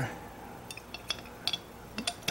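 Metal parts of a hand meat grinder clinking and tapping as they are handled: a handful of light, irregular clicks.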